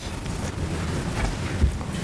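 Low rumbling and rustling on the room's microphones, with faint knocks, as people get up from their seats and move about.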